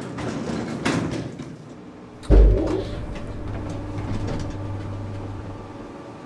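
Elevator doors sliding shut and meeting with one heavy thud a little over two seconds in, followed by a low steady hum from the elevator car.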